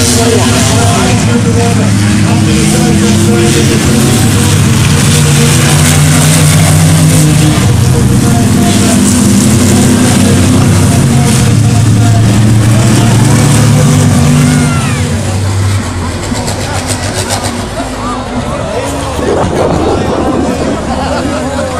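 Engines of racing vehicles running loud on a dirt track, their pitch rising and falling as they rev. About fifteen seconds in, the engines ease off and the sound drops away.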